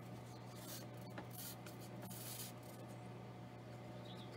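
Faint paper-handling sounds: a thin copy-paper cut-out rustling and rubbing as a plastic school-glue bottle is squeezed along its edges, in a few short soft hisses. A steady low hum runs underneath.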